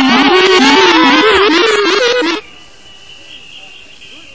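A loud singing voice with no beat under it, wavering in pitch, that cuts off abruptly about two and a half seconds in. What remains is a much quieter stretch of hiss with a thin, steady high tone.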